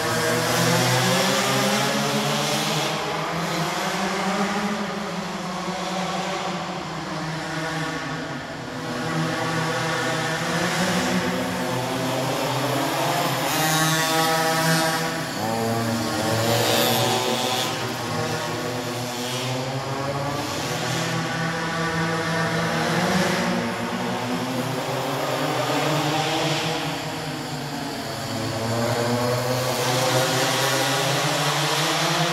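Several minimoto pocket bikes' small two-stroke engines revving up and down as they lap the track. The pitch rises and falls over and over as the riders brake for corners and accelerate out of them, echoing in a large indoor hall.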